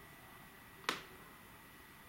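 A single short, sharp click about a second in, over quiet room tone with a faint, steady high-pitched whine.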